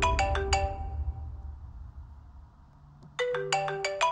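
Mobile phone ringtone, a quick run of short pitched notes: an incoming call ringing. The first ring stops within the first second and fades out, and the ringtone starts again about three seconds in.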